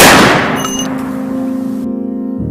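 A single loud bang at the start, fading away over about a second and a half, over sustained background music: a dramatic film sound effect.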